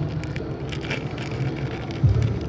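Faint crackling and clicking of a thin plastic cover and soil being handled by fingers, over a steady low hum.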